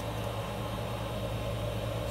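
Steady low electrical hum with an even hiss from the radio bench equipment while a CB amplifier is keyed up and transmitting.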